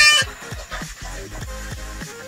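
A small harmonica's held note ends just after the start. Background electronic music with a steady kick-drum beat carries on.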